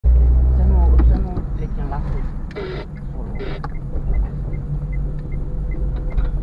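Car engine and road rumble heard from inside the cabin while driving slowly, loudest in the first second, with a turn signal ticking about twice a second from about two seconds in. Voices speak briefly over it.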